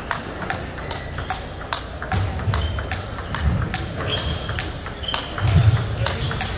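Table tennis balls clicking off paddles and tables in a quick, irregular patter as rallies at several tables overlap. Low thumps sound underneath, the loudest near the end.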